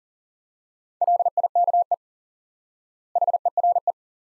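Morse code sent at 40 words per minute as a single steady beeping tone keyed in dots and dashes. It spells two words, "like" and then "here": the first starts about a second in, and the second follows about a second later.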